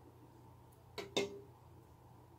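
Two quick, light knocks of kitchenware, about a second in and a fifth of a second apart, the second louder with a brief ring, over a faint steady hum.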